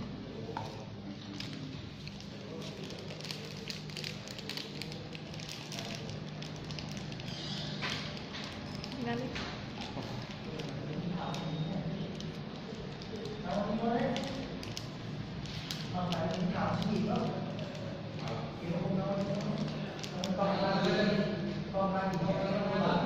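People talking, mostly in the second half, over a low steady hum, with scattered light clicks earlier on.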